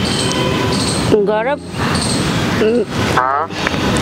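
Three brief bursts of a voice over a steady hiss of outdoor traffic noise.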